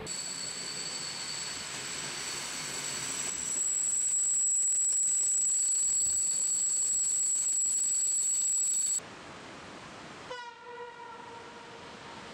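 Steady rushing noise with a thin high whine above it, louder for several seconds and then cut off suddenly. About ten seconds in, a Flåm Railway train's horn sounds one long steady note.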